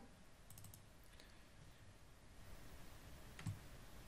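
Near silence with a few faint computer mouse clicks: a quick cluster about half a second in and a couple of single clicks later.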